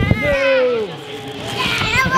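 Children playing, with a high child's voice in a long call that falls in pitch. A few sharp knocks come right at the start.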